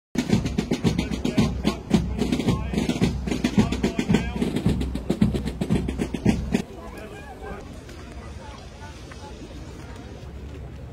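A military corps of drums playing a march beat, rapid snare strikes and rolls over bass drum. The drumming stops suddenly about two-thirds of the way through, leaving a much quieter background of voices outdoors.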